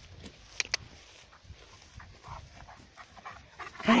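Central Asian shepherd dog panting as it comes up close, in a run of short faint breaths in the second half, with two sharp clicks just over half a second in.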